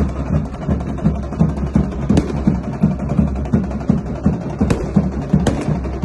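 Music of fast, steady drumming, about three beats a second, with a few sharper, louder strikes.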